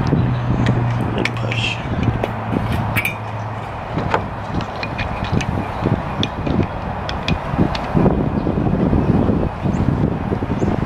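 Scattered light clicks and rubbing as plastic end caps are pushed and worked into the ends of a metal bike-rack rail by hand, over steady outdoor noise. A low hum runs through the first four seconds or so.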